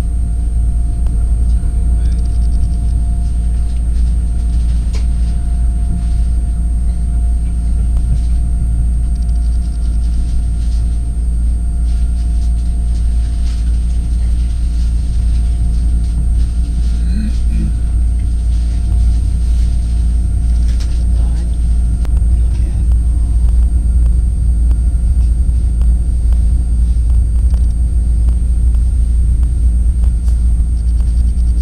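Steady low rumble of a moving train heard from inside the carriage as it runs over the tracks, with a faint constant whine above it.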